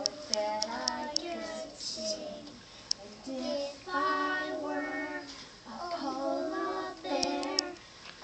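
A group of young children singing a song together in phrases, with short breaks between them.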